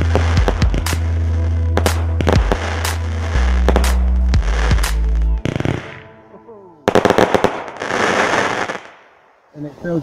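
Fireworks going off in quick, sharp bangs and crackles over background music. The music fades out about halfway through. About seven seconds in comes a sudden loud cluster of cracks, followed by a hissing rush that dies away.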